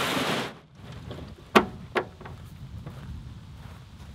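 A short burst of rushing noise at the start, then two sharp knocks about half a second apart over a low rumble: a loaded aluminium canoe being handled on a gravel portage track.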